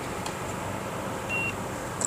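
A single short, high electronic beep from a card payment terminal, over a steady low hum inside the car.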